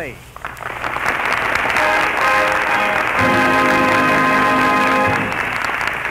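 Studio audience applauding, with the orchestra joining about two seconds in and playing a fuller held chord that stops just after five seconds. The sound is muffled and narrow, as on an old radio broadcast recording.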